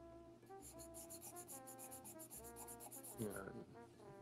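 Graphite pencil scratching on sketchbook paper in rapid, repeated strokes, faint, with soft background music underneath.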